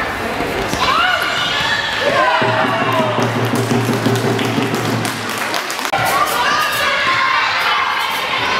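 Children shouting and cheering in a large sports hall during a youth handball game, with the ball thudding on the floor. A low steady drone comes in about two and a half seconds in and cuts off suddenly near six seconds.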